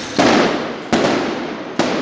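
Three loud explosive bangs from a street riot, one after another, spaced a little under a second apart. Each trails off between the buildings before the next.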